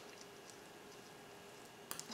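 Near silence: faint room tone with a low steady hum and a single small click near the end.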